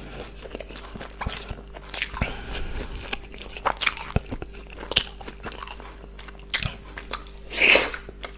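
Close-miked chewing of a chicken burger: a string of sharp, crisp crunches between wet mouth sounds, with one louder, longer wet sound near the end.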